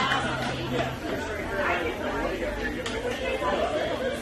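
Crowd chatter as a song ends: a held low note stops about a second in, leaving overlapping talk.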